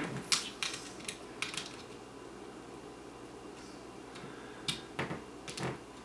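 Faint small clicks and taps of the metal plug of a PC5N sync cord being fitted and screwed into the PC sync socket on a Canon 580EX II flash, several in the first second and a half and a couple more near the end.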